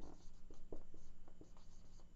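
Marker pen writing on a whiteboard: a string of short, faint scratching strokes as a word is written out.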